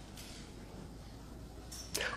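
Faint room tone in a lecture hall, with a low steady hum and a short faint hiss near the end.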